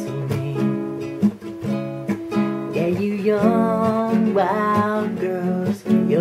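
Acoustic guitar strummed through a chord progression in a steady down, down, up, up, down pattern. A voice sings along in the second half.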